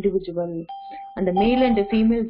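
Speech, with a steady electronic beep tone that starts in a short pause about a third of the way in and carries on under the voice.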